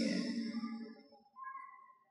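A man's voice trailing off and fading to silence within the first second. About a second and a half in there is one faint, brief, thin tone.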